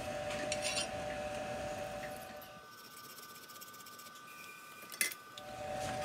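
Quiet room tone with a steady faint hum, a few faint light ticks early on, and one sharp click about five seconds in, as a thin wooden strip is handled and laid down on the workbench.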